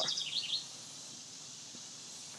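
A small bird's rapid, high-pitched trill that stops about half a second in, followed by faint, steady outdoor background noise.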